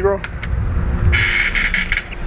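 Wooden driveway gate rolling open: a low rumble, joined about a second in by a steady, higher grinding whine.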